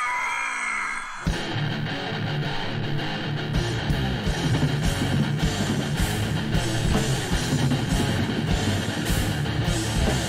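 Death metal song playing, with a rough-sounding recording: distorted electric guitars come in about a second in, and drums join a couple of seconds later.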